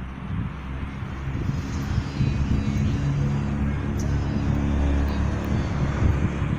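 A motor vehicle running close by on the street, its low rumble growing louder over the first two seconds and then holding steady.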